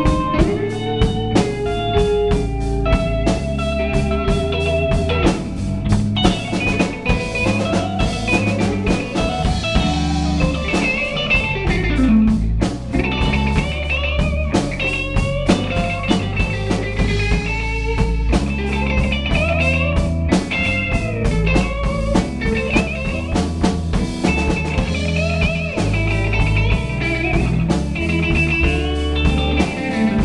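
Live blues-rock band playing an instrumental passage: electric guitars, bass and drum kit, with a lead line of bent, sliding notes above a steady beat.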